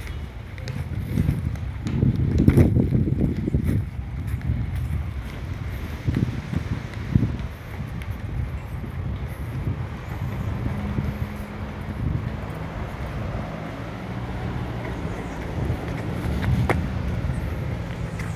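Wind buffeting the phone's microphone in uneven gusts, strongest a couple of seconds in, over the background noise of road traffic. In the second half a low steady hum, like a vehicle engine, runs for several seconds.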